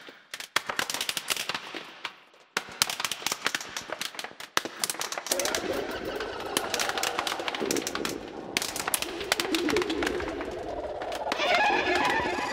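Sound-design opening of an electronic (psytrance) track, starting after a silence: a dense run of rapid crackling clicks that dips briefly about two seconds in. About five seconds in, a fuller layer of wavering tones joins the clicks and swells near the end.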